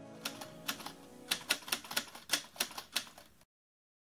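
A rapid, irregular series of about a dozen sharp clicks, growing louder, that cuts off abruptly into dead silence shortly before the end.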